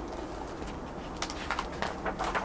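A faint bird call over quiet outdoor background, with a few short papery rustles in the second half as a picture book's page is turned.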